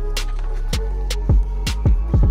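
Background hip hop music with a beat of deep bass-drum hits and crisp hi-hats.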